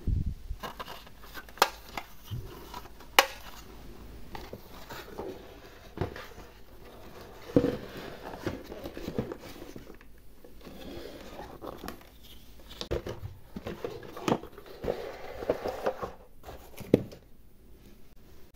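Hard plastic toy dollhouse handled by hand: scattered clicks and knocks of plastic, with light rustling and crinkling between them.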